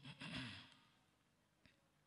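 A Quran reciter's deep breath drawn in close to the microphone, a short breathy rush in the first half second or so, then near silence.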